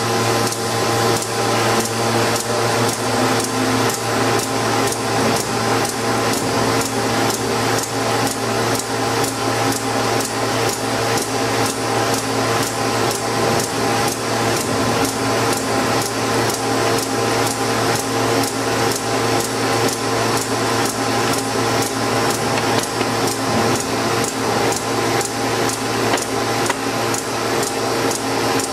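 PT 230 envelope glue and strip-tape applying machine running steadily: a constant mechanical hum with regular clacks, about two a second, from its cycling feed and delivery mechanism.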